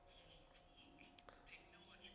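Near silence: room tone with faint murmured voices and a few soft clicks about a second in.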